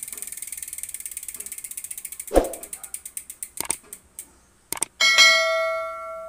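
GUB six-pawl rear freehub freewheeling fast, its pawls clicking in a dense, rapid buzz. After a thump a little over two seconds in, the clicking slows into separate ticks as the wheel spins down. About five seconds in, a ringing chime sound effect comes in and fades.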